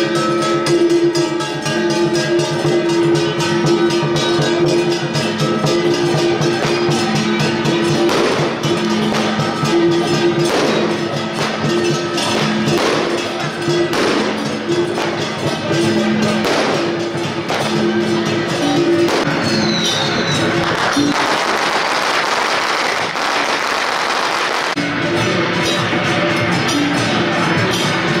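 Temple procession music: a sustained melody over a steady beat, with gong and percussion strikes standing out through the middle stretch. Near the end the melody drops away for a few seconds under a dense noise, then returns.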